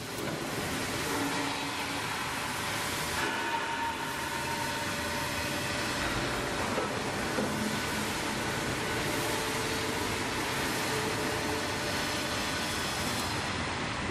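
Rail transfer trolley running along its track: a steady rolling rumble with a few faint whining tones over it.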